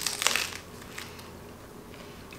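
A bite into a rolled pita sandwich filled with romaine lettuce, tomato and deli slices: one short crunch in the first half second, then faint chewing.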